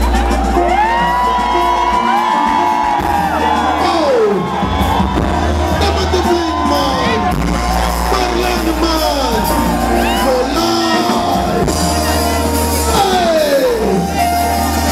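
Live band music through a concert PA, with a woman's voice singing long gliding runs over a steady bass, and the crowd whooping and cheering.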